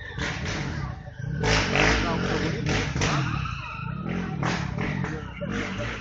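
People talking outdoors, children's and adults' voices mixed, with bursts of low rumbling noise, loudest a second and a half in.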